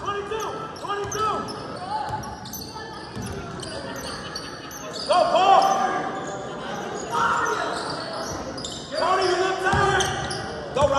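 A basketball being dribbled on a hardwood gym floor during play, with sneakers squeaking again and again on the court, in a large echoing gym.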